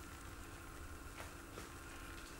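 Faint steady sizzle of a butter-and-flour roux cooking in a saucepan over a gas flame, over a low steady hum, with one faint tick about a second in.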